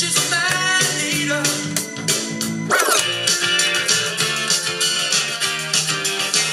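Pop music playing from DJ decks. About three seconds in, one track gives way to another, with a short falling glide at the change.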